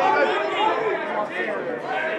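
Several men's voices shouting and calling over one another around a rugby ruck, with no single clear speaker.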